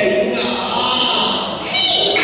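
Cantonese opera singing: a high female voice singing the dan role's line in long held notes.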